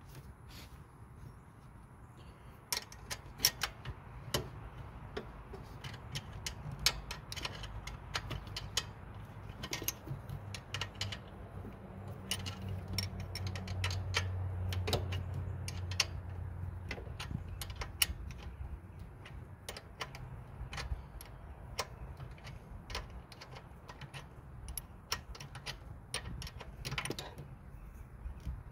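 Small ratchet wrench clicking, with light metal clinks, in irregular bursts as it backs out the square-drive oil drain plug of a Briggs & Stratton EX1900 mower engine. A low steady rumble runs underneath.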